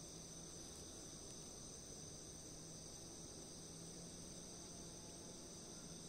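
Faint, steady, high-pitched chorus of insects, unbroken and unchanging.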